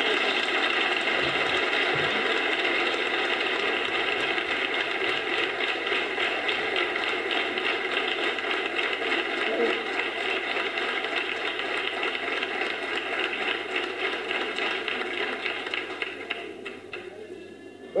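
Audience applauding steadily, tapering off over the last few seconds.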